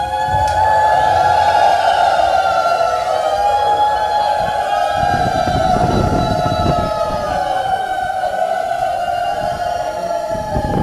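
Several conch shells blown together, long loud tones that overlap and waver slowly in pitch. A rougher low noise joins about five seconds in.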